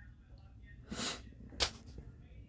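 A man's short sniff or sharp breath through the nose about a second in, followed by a brief sharp click.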